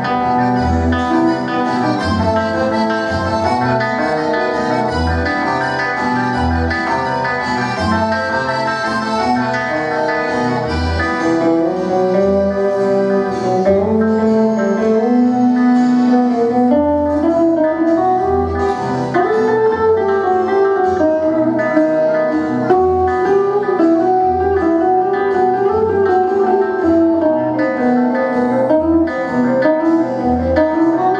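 Live instrumental passage from a small acoustic band: guitars strumming and picking with an accordion, over an even low bass pulse. There is no singing.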